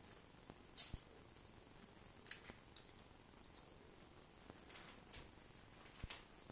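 Near silence broken by a few faint, short scratchy rustles of hair being brushed and wound onto hair rollers, about a second in, a cluster between two and three seconds in, and again near five seconds.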